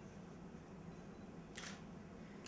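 Quiet room hum, with one short, sharp click-like hiss about one and a half seconds in.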